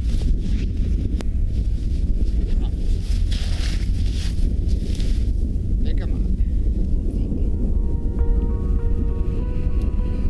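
Wind buffeting the microphone in a steady low rumble, with background music coming in about seven seconds in.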